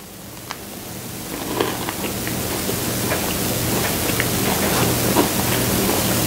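A person chewing a crunchy, chewy cookie close to a clip-on microphone: scattered small crunching clicks over a steady hiss that grows steadily louder, with a low hum underneath.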